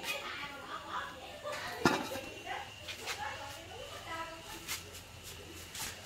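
A single sharp knock about two seconds in, as the metal lid of a rice-cake steamer is lifted off and set aside, with a few lighter clicks and faint voices in the background.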